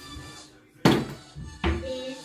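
Two sharp knocks from kitchenware being handled at a kitchen counter, the first, a little under a second in, the loudest, the second weaker with a short ring; soft background music plays under them.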